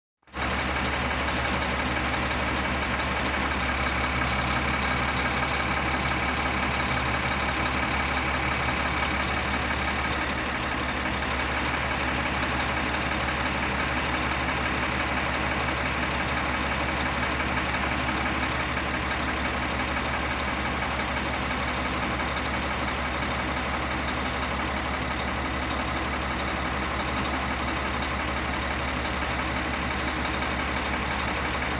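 Crane truck's engine idling steadily, without change.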